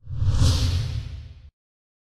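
Whoosh sound effect of a TV news channel's logo ident, with a deep rumble under a hissing sweep. It swells for about half a second, then cuts off suddenly about a second and a half in.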